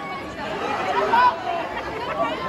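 Audience chatter: several people talking close by in a concert crowd, with no music playing.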